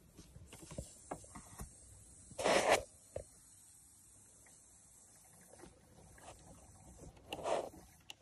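Small clicks and scrapes of hands working the cooling-system bleed screw on a Peugeot 206's heater hose, opened to check for trapped air, which turns out to be a little. Two short bursts of noise stand out, the louder about two and a half seconds in and another near the end.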